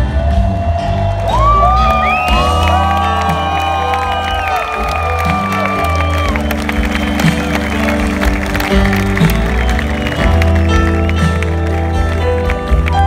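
Live rock band playing loudly through a stadium sound system, heard from within the crowd, between sung lines of a slow song. From about a second in to past the middle, a sustained lead melody slides between notes over the steady accompaniment.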